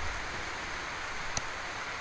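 Steady background hiss with no speech, and one faint click about one and a half seconds in.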